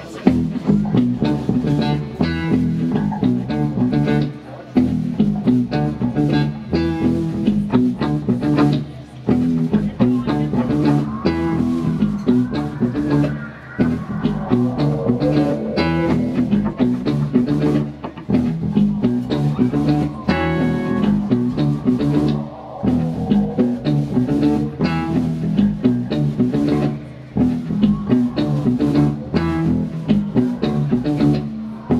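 Live instrumental funk band playing a groove: electric guitar, bass guitar, drums and keyboards. A lead line with bending, sliding notes rises above the steady bass and drum rhythm around the middle.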